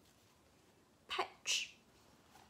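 A person sneezes once about a second in: a short voiced onset falling in pitch, then a sharp hissing burst.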